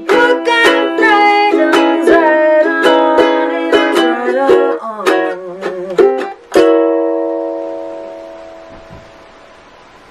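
Ukulele strummed and picked through the closing bars of a song, ending with a final chord about six and a half seconds in that rings on and slowly fades away.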